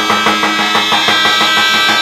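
Traditional Macedonian folk dance music: a steady drone and melody over quick, even drum beats.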